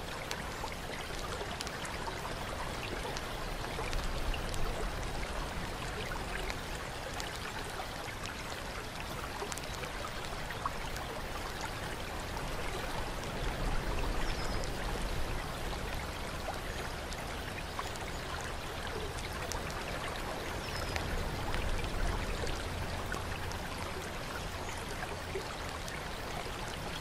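Fountain water trickling and splashing steadily into a stone basin and pool, with a low rumble that swells up three times.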